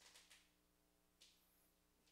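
Near silence: room tone with a faint steady hum, and a brief faint hiss a little past a second in.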